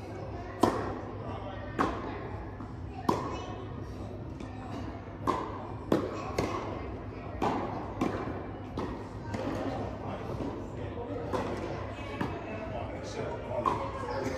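Tennis rally in a large indoor hall: a string of sharp pops as rackets strike the ball, and the ball bouncing on the court, each one echoing. The loudest pop, about half a second in, is the serve.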